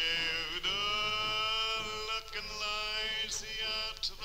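Operatic baritone voice singing long, sustained notes with a wide vibrato, broken by short breaths into about three phrases.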